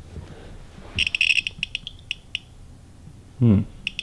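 Handheld G318+ RF detector beeping through its speaker as it picks up a radio signal. About a second in it gives a quick run of high beeps, then single chirps that space out and stop within the next second or so. Near the end comes a short, low vocal sound.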